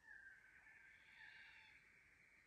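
A faint, drawn-out animal call with a clear pitch, starting at once and fading after about a second and a half.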